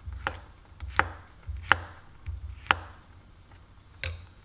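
Chef's knife chopping garlic cloves on a bamboo cutting board: a slow run of sharp, separate knocks of the blade on the wood, roughly one every second or less, with a lull near the end.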